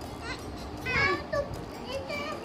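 A toddler's high-pitched wordless vocalising: a short sound near the start, then a louder call about a second in that falls in pitch.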